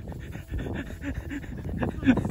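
Alpacas breathing and snuffling right up against the phone microphone, in short irregular puffs, with rustling as fur brushes against the phone.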